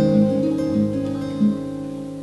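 Acoustic guitar playing a few plucked notes that ring on and slowly fade.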